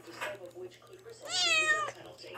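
Tabby kitten meowing once, a single meow of well under a second near the end.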